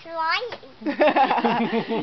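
A young child's short rising squeal, then a run of laughter.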